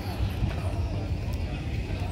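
A low, steady rumble on the microphone of a handheld recording on the move, with faint voices of people nearby.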